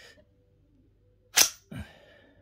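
The bolt of a KRISS Defiance semi-automatic .22 LR rifle being worked by hand. It gives one sharp metallic clack about one and a half seconds in, followed by a duller knock. The bolt closed without feeding a snap cap from the magazine.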